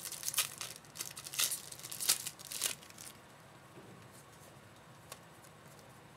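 A shiny trading-card pack wrapper being torn open and crinkled by hand: a run of sharp crackles over the first three seconds, then quieter handling with a single small click.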